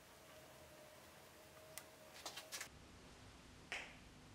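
Near silence with a few faint light clicks around the middle, then one sharper click or tap near the end.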